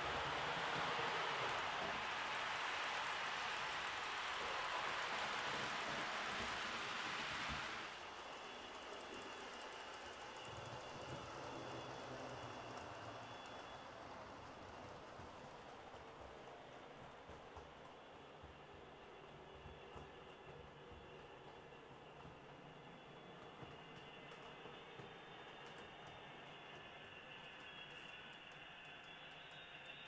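HO-scale model train running on its track: the wheels of a Proto 2000 GP20 model diesel and its hopper cars rolling on the rails, with the locomotive's motor and gears running smoothly. A steady rushing rumble, loud for the first eight seconds, then suddenly quieter and steady.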